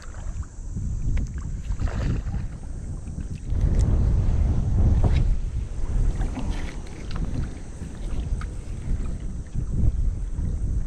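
Strong wind buffeting the camera microphone in uneven gusts, loudest from about three and a half to six seconds in.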